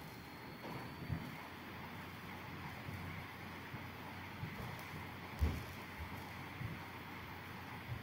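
Quiet room tone: a steady low hiss with a faint thin high whine, broken by a few soft low thumps, the clearest about a second in and about five and a half seconds in.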